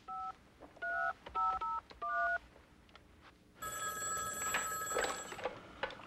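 A touch-tone telephone dialing a number: a quick run of about six two-tone beeps. About a second later a telephone bell rings once, for about two seconds.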